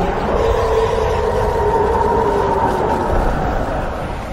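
Fan-remade roar of a giant anime titan: one long, held roar that fades out near the end.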